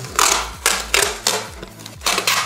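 Masking tape being pulled off the roll and wrapped around a plastic bottle, in about four short pulls, the first the longest and loudest.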